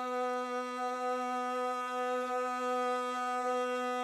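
Rababa, a Bedouin spike fiddle, bowed on one steady sustained note.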